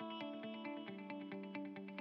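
Soft background music of quick, evenly spaced plucked notes.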